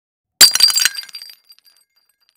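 Glass shattering sound effect: a sudden crash about half a second in, followed by tinkling pieces and a high ringing that dies away within about a second.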